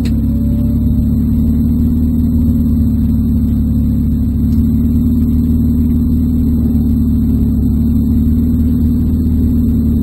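Spec Mazda Miata's four-cylinder engine idling steadily while the car stands still, heard from inside the cabin.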